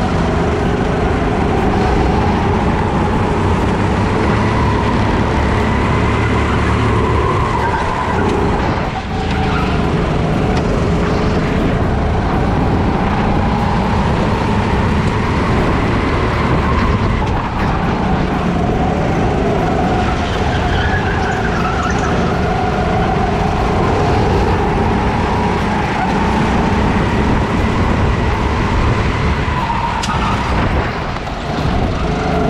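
Rental kart's engine heard onboard during a race. The pitch rises and falls as it accelerates out of corners and eases off into them, with a brief lift about nine seconds in. Other karts' engines are close by.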